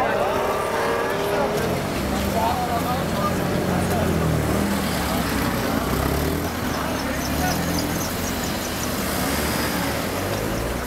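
A motor vehicle engine runs steadily under general street noise, with people talking, most clearly in the first couple of seconds.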